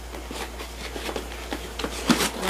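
Faint rustling and light clicks of hands handling and opening the small cardboard box of a BM-800 condenser microphone, over a low steady hum.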